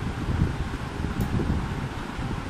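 Air buffeting the microphone: a steady, uneven low rumble with a hiss over it.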